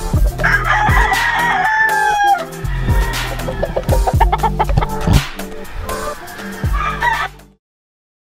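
A gamecock crowing once, one drawn-out call of about two seconds starting about half a second in, over background music with a steady beat; the sound cuts off suddenly near the end.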